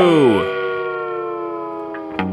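A loud, drawn-out cartoon cow moo whose pitch drops away, ending about half a second in. Steady held tones linger and slowly fade after it.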